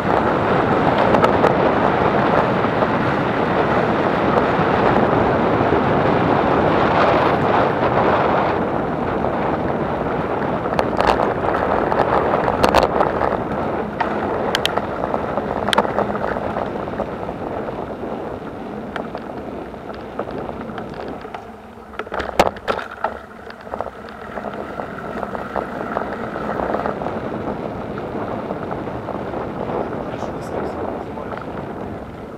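Wind buffeting the microphone of a moving camera, mixed with the rumble of wheels rolling over brick paving stones. The noise is strongest at first and eases off later, with scattered clicks and a short cluster of knocks a little past two-thirds of the way in.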